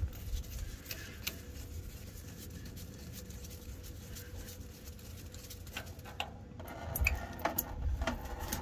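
Faint scattered clicks and rubbing as a gloved hand works loose the threaded return-line fitting on a diesel fuel pump, over a low steady rumble. The clicks come a little more often near the end.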